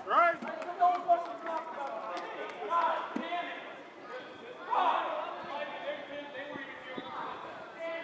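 Players' voices shouting and calling out across an open field, with a loud rising shout at the start and a few short sharp knocks in the first second or so.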